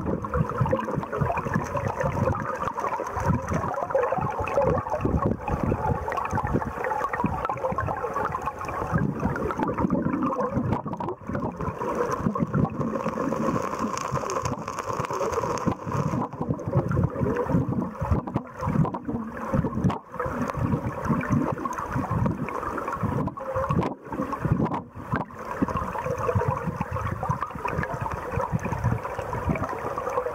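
Flowing stream water heard through an underwater camera: a steady rushing noise with a rough, crackling texture.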